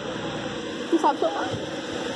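A steady hiss of outdoor background noise, with a brief voice about a second in.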